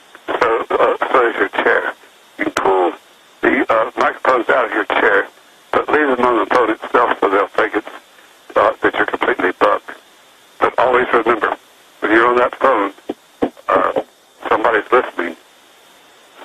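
A man talking over a telephone line: thin, narrow-band speech in phrases with short pauses, and a steady line hiss between them.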